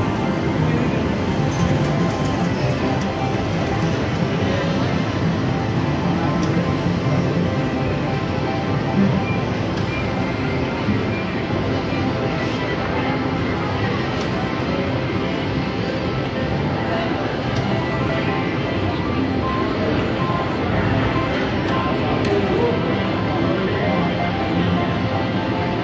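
Reelin N Boppin slot machine playing its music and reel-spin sounds during a free-games bonus, over the murmur of casino voices.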